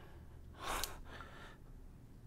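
A single short breath, a soft rush of air lasting about half a second, just before the middle, with a tiny click at its end; otherwise quiet room tone.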